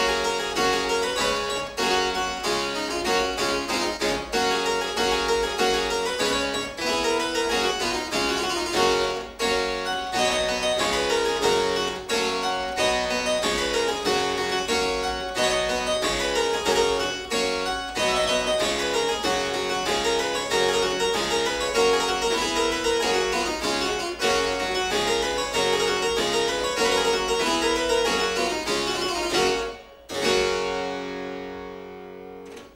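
Solo harpsichord playing a busy, continuous run of plucked notes, with a brief break right at the end.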